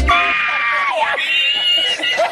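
A man's high-pitched, squealing laughter in two long held cries, the second pitched higher than the first.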